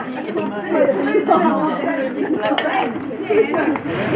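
A group of voices chattering and talking over one another.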